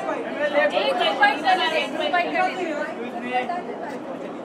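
Indistinct chatter: several people talking over one another in a large room, with no single clear voice.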